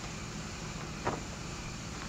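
Steady background hiss and room noise of the interview recording between sentences, with one faint click about a second in.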